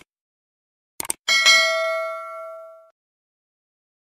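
Subscribe-button animation sound effect: two quick mouse clicks about a second in, then a notification bell ding that rings out and fades over about a second and a half.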